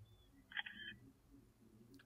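Faint camera-shutter sound from the DJI drone controller as a photo is taken: one short sound about half a second in, otherwise near silence.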